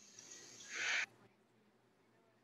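A short soft breath sound from a woman, a puff or exhale lasting under half a second, about two-thirds of a second in. The sound then cuts off suddenly to dead silence.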